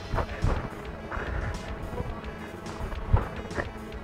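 Background music playing, with a few sharp slaps of Muay Thai shin kicks landing on the legs; the loudest lands about three seconds in.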